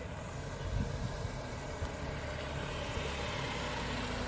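Mini Cooper's engine and tyres rolling slowly as the car approaches, a steady low rumble growing slightly louder, with a couple of brief low surges in the first two seconds.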